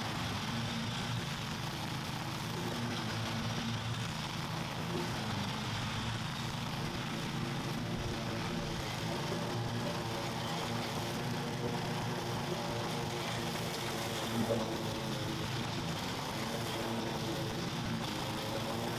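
Petrol engine of a commercial walk-behind lawn mower running steadily under load as it cuts through tall, overgrown grass.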